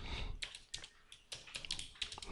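Faint typing on a computer keyboard: an irregular run of quick keystrokes as a short phrase is typed.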